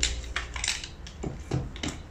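Shock-corded DAC aluminium poles of a Helinox Chair One frame clicking and clacking together as the sections are pulled apart and folded, about half a dozen sharp clicks.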